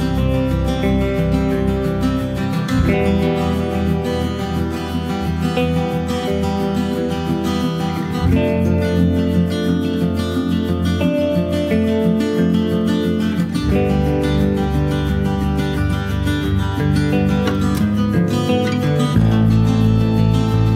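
Background instrumental music led by strummed acoustic guitar, moving to a new chord every few seconds.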